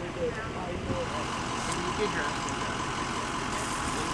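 A vehicle engine idling steadily, with a faint steady whine running through it. Voices are heard talking in the first second.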